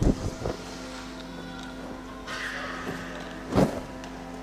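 A soft, sustained organ chord holds under a few knocks of the communion vessels being handled on the altar. A heavier thump comes a little before the end.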